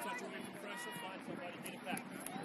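Indistinct voices of players and sideline spectators calling out at a distance across an open playing field, over a steady outdoor background.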